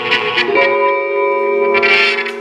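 Electric guitars played through effects pedals: layered, sustained tones with scratchy picked noise over them. The held notes shift in pitch about half a second in, and a scraping stroke swells near the end.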